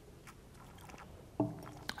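Quiet sipping of white wine from a glass, with faint mouth clicks, then a short hummed 'mm' about a second and a half in and a small click near the end.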